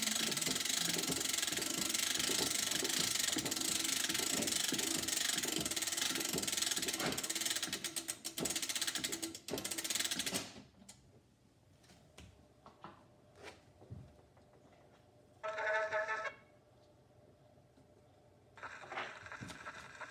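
Edison cylinder phonograph's spring motor being wound by its side crank: a steady ratcheting clatter that stops about ten seconds in. A few light clicks and a brief pitched sound follow.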